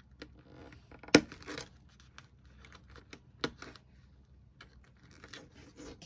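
Clear plastic binder envelopes handled and fitted onto metal binder rings: plastic crinkling and rustling with scattered clicks, the sharpest about a second in and another a little after three seconds.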